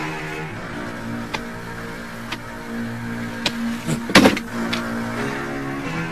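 Background score of low held notes with a few light percussive ticks, broken about four seconds in by a short, loud, rushing hit.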